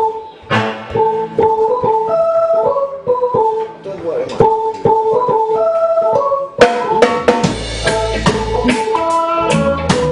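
Live reggae band: a keyboard with an organ sound plays a stepping riff over light percussion, then the full drum kit and bass guitar come in about two-thirds of the way through.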